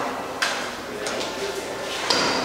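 Indistinct chatter of several people in a room, with a sharp click about half a second in and a few lighter clicks after.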